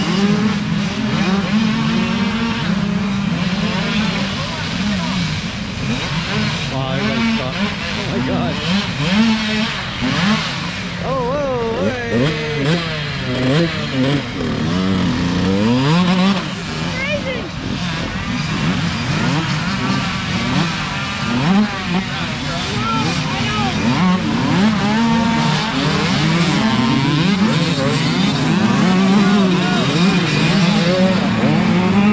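Several small dirt bike engines running throughout, with pitches rising and falling as they rev, most busily in the middle of the stretch.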